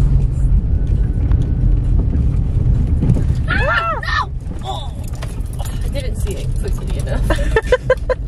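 Road noise inside an old car's cabin while it drives slowly over a potholed gravel road: a steady low rumble with frequent small knocks and rattles from the bumps.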